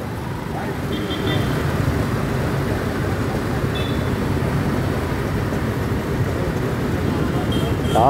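Steady road traffic noise from motorcycles, auto rickshaws and cars passing through a city junction. Two brief high beeps stand out, one about a second in and one about four seconds in.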